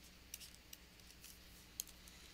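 Faint, sparse clicks and taps of a stylus on a pen tablet while writing, one slightly louder near the end, over near-silent room tone with a faint low hum.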